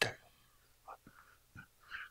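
A man's voice ending a word through a handheld microphone, then a pause with a few faint short sounds such as breaths or mouth noises.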